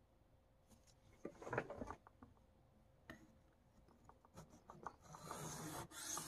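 A few light clicks and knocks of handling, then about five seconds in a steel knife blade starts stroking across a Venev diamond sharpening stone: a steady scraping hiss.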